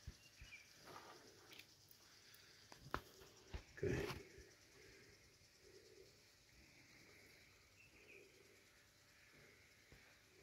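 Mostly near silence, with a few faint, short clicks in the first four seconds.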